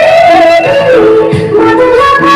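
Loud folk dance music: a held, wavering melody line stepping between notes, over a drum.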